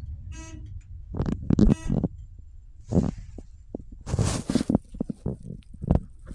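ThyssenKrupp elevator's floor-passing buzzer giving one short electronic buzz near the start as the car passes a floor. It is followed by irregular knocks and thumps, the loudest just under two seconds in, and a brief rushing noise about four seconds in.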